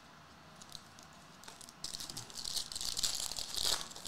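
Foil wrapper of a Topps Chrome NBL trading card pack crinkling as it is torn open, starting about two seconds in after a few light clicks of handling.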